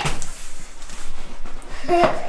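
Cardboard shipping box being opened by hand, its flaps scraping and rustling as they are pulled back.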